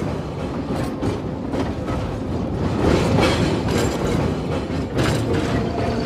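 Freight train of tank cars passing close by: a steady rumble of rolling wheels with repeated clacks over the rail joints.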